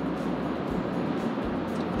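Steady road and tyre noise heard inside the cabin of a Rivian R1T electric pickup at highway speed: an even hiss with a low hum underneath and no engine sound.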